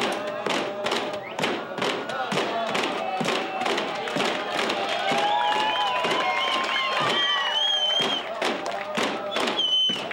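Inupiaq frame drums (qilaut) struck together in a steady beat, about two to three beats a second, with a group of voices singing along. In the second half the singing turns to long held notes and high calls.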